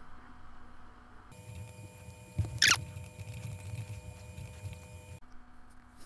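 Quiet background hum with faint steady tones, and a short sharp sound, a click or knock, about two and a half seconds in.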